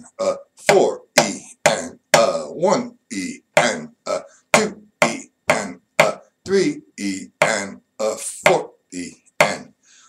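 Drumstick strokes on a snare drum, about two a second in a near-even rhythm, played through a rhythm-reading exercise in 4/4 with each stroke counted aloud.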